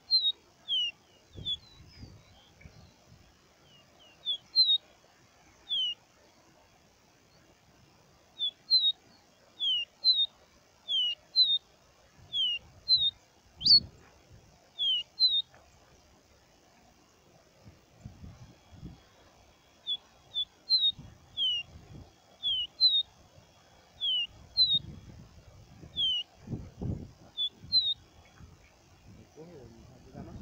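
Caboclinho (Sporophila seedeater) singing: phrases of short, clear whistled notes, most sliding down in pitch, delivered in runs with pauses of a few seconds between them. Low gusty rumbles come and go underneath.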